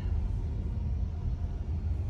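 Low, steady road rumble inside the cabin of a moving self-driving taxi: tyre and road noise with no engine note.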